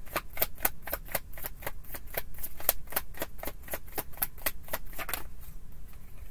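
A tarot deck being shuffled by hand: a quick, even run of card snaps, about five a second, that stops about five seconds in.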